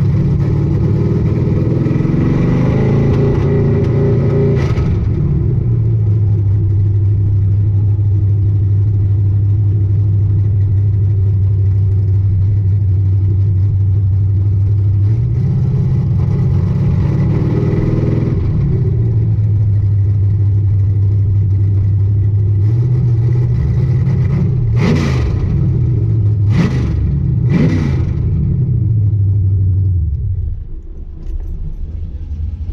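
Third-generation Chevrolet Camaro's engine heard from inside the cabin: it pulls up in pitch twice and settles to a steady low drone in between, then gives three quick revs near the end before the sound drops off.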